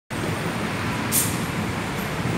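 Steady city street traffic noise, with a brief high hiss about a second in.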